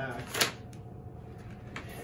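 Cold laminate film being peeled back by hand: one short, sharp snap of the plastic sheet about half a second in, then a low steady hum underneath.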